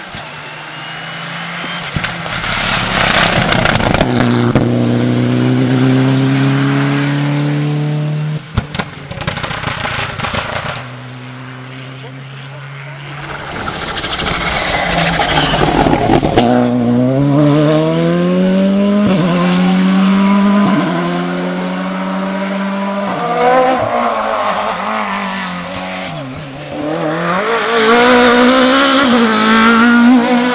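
Rally cars at full speed on a special stage. A car comes up the lane and brakes, with a burst of sharp pops and crackles on the overrun. Then the Volkswagen Polo R5 rally car passes close by and accelerates away through a quick series of rising upshifts, and near the end a second car, a Renault Clio, comes up loud.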